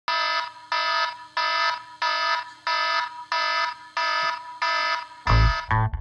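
Smartphone alarm going off: a pitched electronic tone repeating about one and a half times a second, eight times over. Music with a heavy bass comes in near the end.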